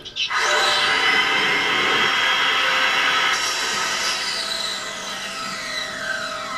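Power saw with a circular blade running with a steady high whine. Its pitch dips with a falling glide and it gets slightly quieter a bit past the middle.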